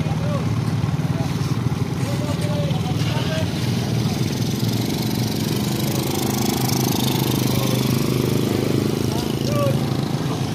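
Several motorcycle engines running close by, a steady low rapid pulse, with people's voices talking over them.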